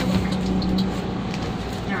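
A steady low hum over background noise that stops about a second in, with a few faint light clicks or rustles.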